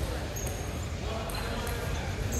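Table tennis balls being hit in play, a few sharp, high clicks spaced about a half second to a second apart, over a steady background of voices in a large hall.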